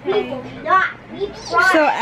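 Voices only: a small child's wordless vocal sounds, then a woman starting to speak near the end.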